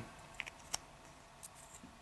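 A few faint, sharp clicks of hard resin model parts: a resin figure's arm, fitted by a square peg, being pressed into its socket on the torso. The clearest click comes just under a second in.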